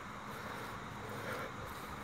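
Faint steady outdoor background noise, a low hum and hiss with no distinct events.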